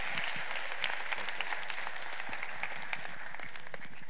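Audience applauding, a dense patter of hand claps that thins out and dies away near the end.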